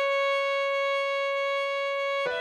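Violin holding one long, steady C# note, played with the second finger on the A string.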